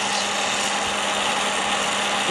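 Hot-air popcorn popper used as a coffee roaster, running: its fan blows a steady rush of air with a constant low hum while green coffee beans swirl in the roasting chamber. The roast is in its early drying stage, well before first crack.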